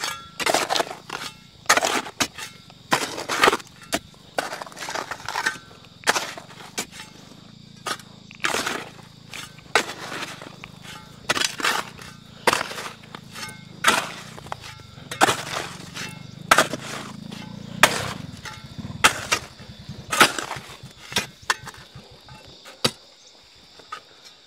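Iron crowbar and hoe striking and breaking up rocky earth and stone: sharp, irregular metal-on-stone impacts about one to two a second, some with a brief ring. A faint steady low hum runs beneath the strikes and fades out about two thirds of the way through.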